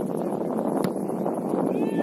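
A steady rush of wind on the microphone, with a high, drawn-out shout from the field near the end.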